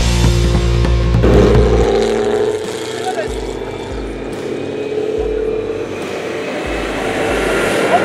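Street traffic: a motor vehicle's engine drones steadily for several seconds and fades, under a loud low rumble at the start.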